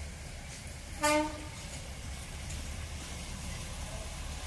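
A locomotive sounds one short toot about a second in: a single note about half a second long, over a steady low rumble.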